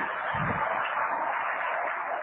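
An audience laughing and clapping: a steady, even wash of crowd noise.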